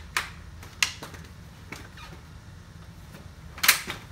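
Clicks and knocks of a stroller frame being handled and unfolded: a few light clicks, then one loud sharp snap near the end.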